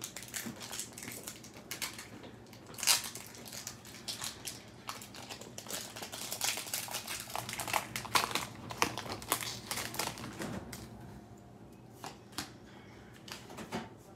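Foil Pokémon booster pack wrapper crinkling and tearing as it is opened by hand: a run of sharp crackles for about ten seconds, one louder tear near the three-second mark, then much quieter over the last few seconds.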